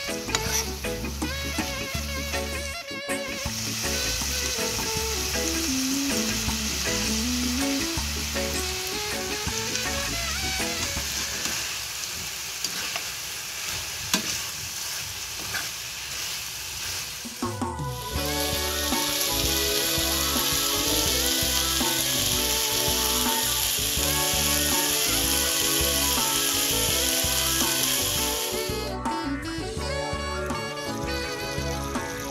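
Beef strips and baby corn sizzling as they are stir-fried in a wok and stirred with a spatula, over background music. The sizzle breaks off briefly at a few edits, about three seconds in and again near seventeen seconds.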